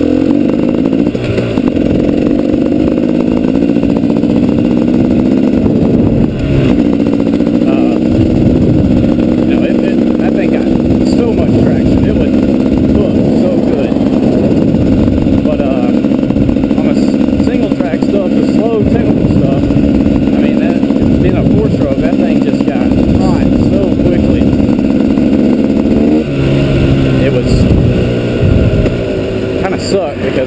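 2012 KTM 250 XCW two-stroke enduro bike's engine running under way at a steady pace. Its pitch changes about six seconds in and drops near the end as it eases off.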